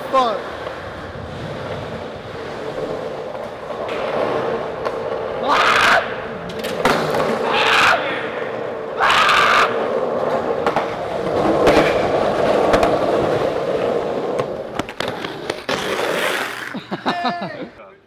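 Skateboard wheels rolling on a concrete parking-garage floor, a steady rumble with a hum. Several short, loud rushing bursts break in around the middle and again near the end.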